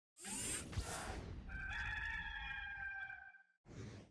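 A loud whoosh, then a rooster crowing once, a long held call of almost two seconds, and a short whoosh near the end.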